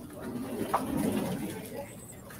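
Indistinct murmur of many students talking at once in a lecture hall, with a short knock less than a second in.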